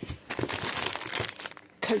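Plastic food packets crinkling and rustling as they are handled in a box and a bag of desiccated coconut is pulled out. The crinkling lasts about a second and a half and stops shortly before the end.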